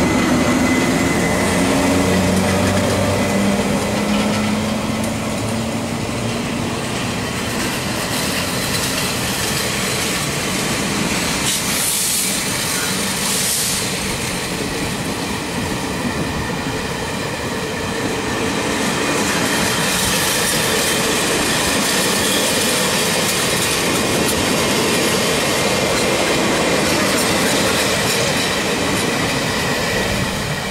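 A General Electric E42C electric locomotive passing close by, its whine rising in pitch over the first few seconds, followed by a string of passenger coaches rolling past with a rhythmic clatter of wheels over rail joints. Two brief high hisses come about twelve and thirteen seconds in.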